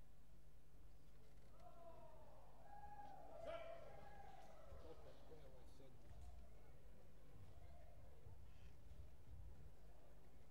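Quiet hall ambience: faint distant voices over a steady low hum, with one brief sharper sound about three and a half seconds in.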